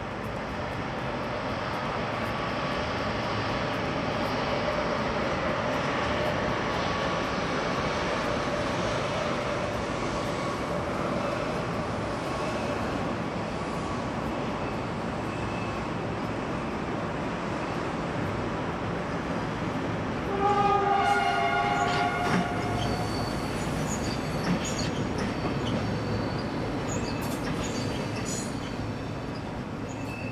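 Passenger trains rolling slowly over the points and crossings of a station approach, a steady rumble of wheels. About twenty seconds in, a train horn sounds a two-note blast lasting about two seconds, followed by thin wheel squeal on the curves.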